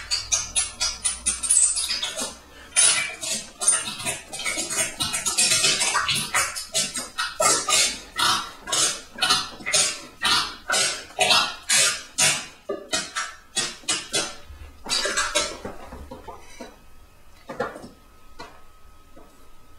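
Electronic percussive sounds played live on a beatjazz exo-voice controller system: a fast run of sharp, noisy hits, about two to three a second, thinning out near the end.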